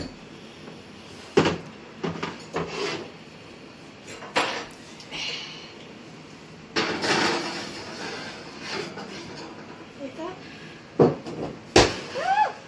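A ceramic baking dish and the oven rack knock and scrape as the dish is set into an electric oven, with a run of short clunks. A sharp, loud clunk near the end comes as the oven door is shut.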